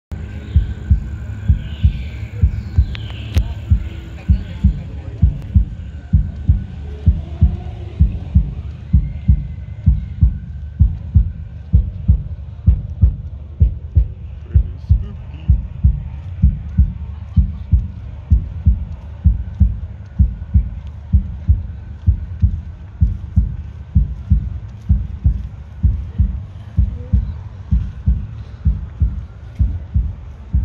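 A deep, heartbeat-like thumping that repeats about twice a second, steady throughout, in the manner of a haunted-house soundtrack.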